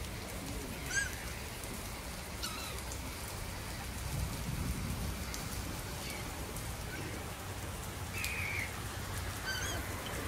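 Gulls calling over open lake water: a few short, harsh cries that slide down in pitch, one about a second in, another about two and a half seconds in, and a last near the end. They sound over a steady hiss of wind and rippling water, with a low rumble swelling about four seconds in.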